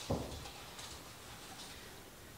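Quiet room tone with one soft, low thump just after the start.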